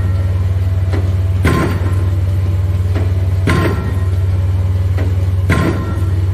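Junttan pile-driving rig's hammer striking a pile about every two seconds. Each blow rings with a metallic clang over the rig's steady, loud engine drone.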